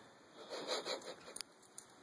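Miniature schnauzer mouthing and chewing a plush panda toy: a burst of rustling and rubbing of fur and fabric, with a sharp click about halfway through.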